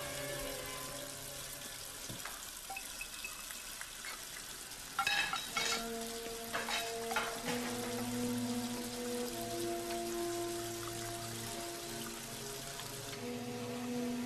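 Tap water running steadily into a sink, with a few clinks about five seconds in. Soft background music with long held notes plays underneath.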